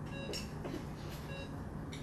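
Patient monitor beeping, short electronic beeps at a fixed pitch about once a second, over the steady hum of anaesthetic equipment, with a little faint handling noise.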